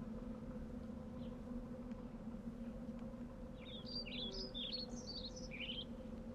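A songbird singing a quick run of high, chirping notes in the second half, over a faint steady low hum.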